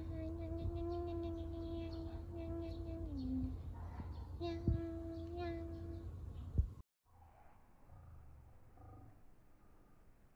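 A voice holds long, steady, level-pitched notes while a cat is patted. The first note lasts about three seconds and slides lower at its end; a second note follows about a second later. Soft, regular patting sounds sit underneath, with a couple of small clicks, and the sound cuts off sharply about two-thirds of the way through.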